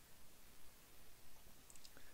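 Near silence: faint room tone, with a faint click or two near the end.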